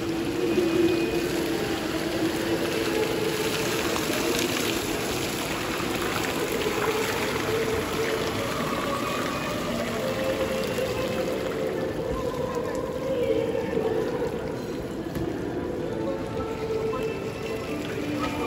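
Music playing over the steady splash of a fountain's water jet falling into its basin, the splashing thinning out in the last third.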